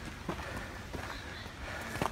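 Footsteps on a steep, rocky trail: a few light, irregular knocks of shoes on rock and gravel over a low rumble.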